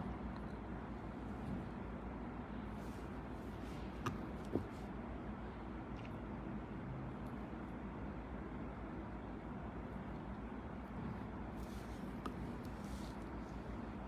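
Quiet room tone: a steady low hum and hiss with no clear sound of the work, broken by two small clicks about four seconds in.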